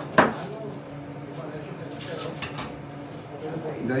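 Kitchen knife cutting a tomatillo in half, the blade knocking sharply once onto the foil-covered wooden board just after the start. A few faint clicks follow about two seconds later.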